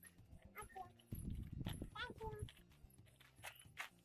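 Faint, indistinct speech, with a low rumble about a second in.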